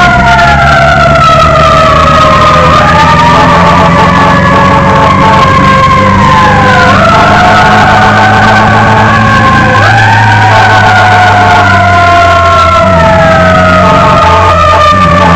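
Emergency vehicle siren wailing: several overlapping tones fall slowly in pitch and jump quickly back up every few seconds, over a steady low hum.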